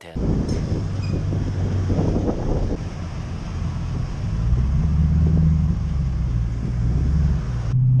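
Mercedes-Benz 1214 truck's diesel engine running as the truck pulls away, a steady low rumble that grows louder about halfway through, with wind on the microphone.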